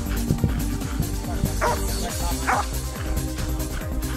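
A Belgian Malinois gives two short barks, about a second apart, over electronic dance music with a steady beat.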